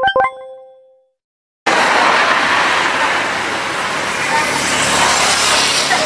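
An electronic chime rings out and fades over about a second, then cuts to silence. About a second and a half in, loud steady street noise begins, with road traffic and the murmur of people.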